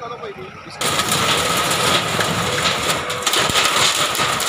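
A JCB backhoe loader's engine running hard as its arm tears down a roadside shed. It comes in loud and sudden about a second in, with a steady whine and some knocks of debris.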